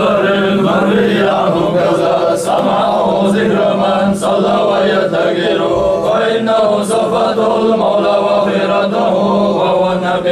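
A group of men chanting a mawlid together in unison, unaccompanied voices, over a steady held low note.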